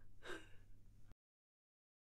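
A short, breathy gasp just after the start, then the sound cuts off completely about a second in, leaving dead silence.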